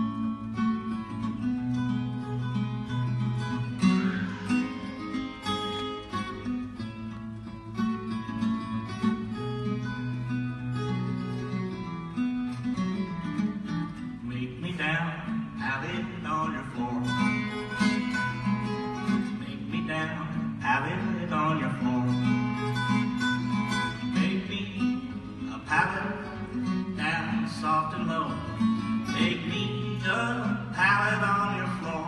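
Acoustic guitar played live in a blues song, picked with a steady bass line under treble notes. The picking gets sharper and brighter about halfway through.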